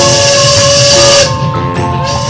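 Steam locomotive whistle sound effect: one whistle that slides up and holds for just over a second with a loud hiss of steam, and a second whistle starting near the end. Light background music with mallet notes and drums plays under it.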